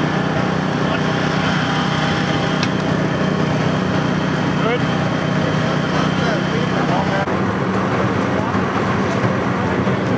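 An engine running steadily with a low, even drone, with indistinct voices of the rescue crew over it.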